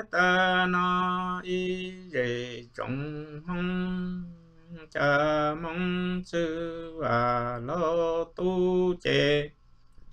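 A man singing Hmong kwv txhiaj, the traditional sung poetry, solo and unaccompanied. He holds long notes with sliding, wavering pitch in phrases split by short breaths, and falls silent just before the end.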